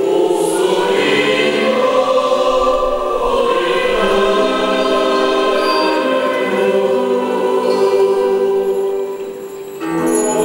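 Mixed choir singing a sustained hymn-like piece with keyboard and acoustic guitar accompaniment, in a reverberant church. It briefly falls softer near the end, then comes back in.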